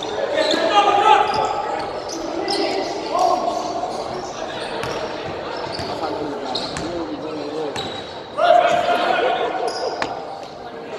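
Pickup basketball on a hardwood gym floor: sneakers squeaking sharply again and again as players cut and stop, with the ball bouncing as it is dribbled, all echoing in a large hall.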